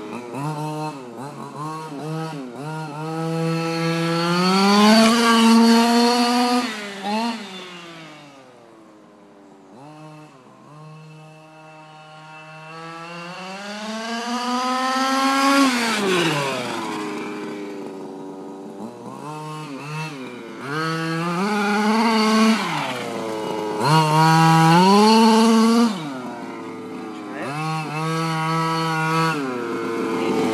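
An HPI Baja 5SC RC truck's small two-stroke gas engine revving up and down again and again as the truck is driven. It is loudest in three long pulls, the last about 22 to 26 seconds in, and quieter in a lower, steadier stretch about a third of the way through.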